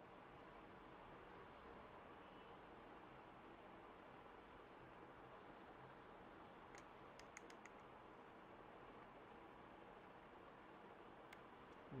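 Near silence with a steady faint hiss, broken by a quick run of about five faint clicks about seven seconds in and one more near the end: the plastic setting buttons of a digital alarm clock being pressed.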